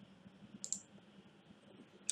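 A single faint computer mouse click, from clicking the Run button to start a compiled program; a couple of fainter ticks come around it.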